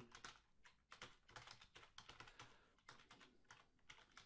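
Faint typing on a computer keyboard: a quick, uneven run of key clicks.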